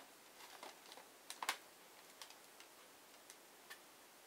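Faint, scattered plastic clicks from a smoke detector's housing and mounting bracket being handled while the bracket is fitted on, the clearest about one and a half seconds in.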